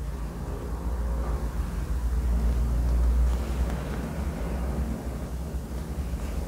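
A low, steady rumble with faint rustling of cloth and thread as cross-stitches are worked by hand into Aida fabric in an embroidery hoop.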